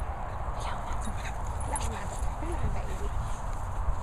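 Wind rumbling on the microphone, with a dog whining briefly, its pitch sliding up and down, near the middle.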